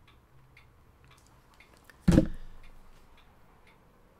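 Faint, regular ticking, about two ticks a second, with a single loud thump about halfway through that dies away over about half a second.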